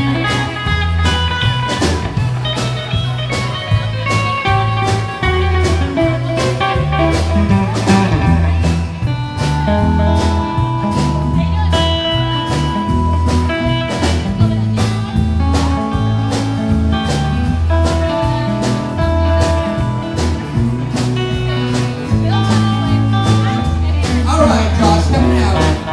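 Live blues-country band playing an instrumental passage: a single-note guitar lead over acoustic rhythm guitar, electric bass and a steady drum beat.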